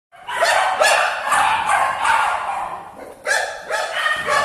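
Dog barking repeatedly, with a brief pause near the end.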